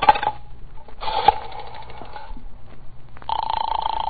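Telephone sound effect of a call going through to the operator: a brief click at the start, then a buzzing ring tone on the line twice, the second louder and longer.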